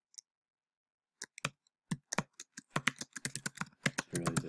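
Typing on a computer keyboard: after about a second of quiet, a run of sharp key clicks that comes quicker and denser toward the end.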